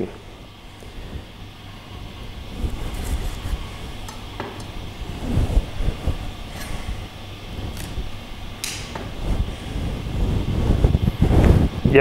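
Low, uneven rumbling background noise with a few faint taps and clicks as endive leaves are handled on a plastic cutting board and dropped into a small ceramic bowl.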